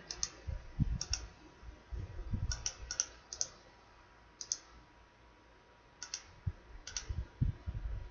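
Computer mouse clicking: about eight short, sharp clicks at irregular intervals, several in quick press-and-release pairs, with a quiet stretch in the middle.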